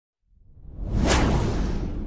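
Intro whoosh sound effect: a swell of noise that builds for under a second, peaks sharply, then slowly fades, with a low rumble beneath it.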